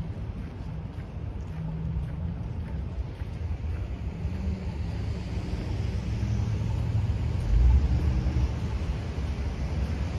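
Outdoor street ambience on a snowy street: a low, uneven rumble that swells briefly about three-quarters of the way through.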